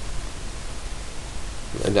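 Steady hiss with a low hum underneath, the noise floor of a desktop voice-over microphone between phrases; a man's voice starts near the end.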